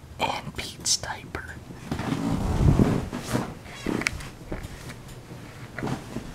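A person whispering close to the microphone, followed from about two seconds in by a low rumble of the phone being handled and moved.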